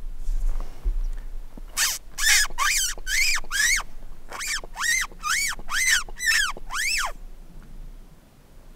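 A hunter's mouth squeak, a predator call made with the lips to imitate a distressed rodent and draw a coyote back out of the grass. It is a run of five short, high squeaks, each rising and then falling in pitch, about two a second, then a short pause and six more.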